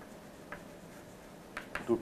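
Chalk writing on a blackboard: a faint scratching with a few light taps of the chalk, one about half a second in and a couple more near the end.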